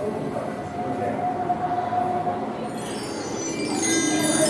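A steady background din with a held tone. From about three seconds in, a bright jingling chime sets in and grows louder.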